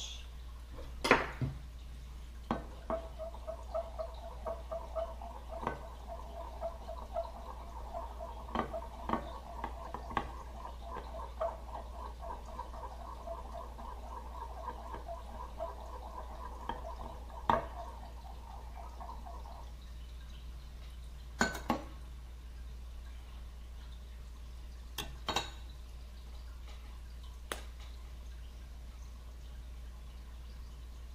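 Metal stir stick scraping and clinking quickly around the inside of a glass Pyrex measuring cup, mixing colorant into liquid plastisol; the stirring stops a little after halfway. A few separate sharp knocks of metal on glass follow.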